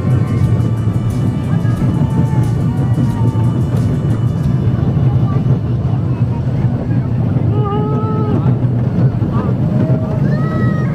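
Roller coaster train rumbling loudly and steadily along its track. A rider gives one long shout about eight seconds in.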